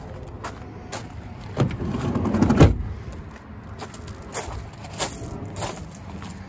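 A minivan's rear sliding door being slid shut: a few clicks, then a rolling rumble that builds to a heavy thud about two and a half seconds in, followed by a few lighter clicks.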